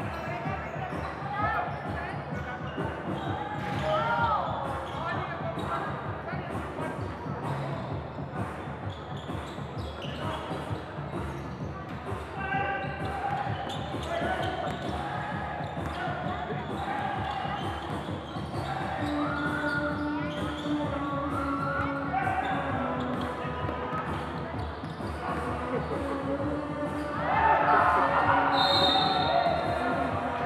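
Basketball being dribbled and bouncing on a hard court, with voices calling out over it in a large echoing hall; the voices get louder near the end.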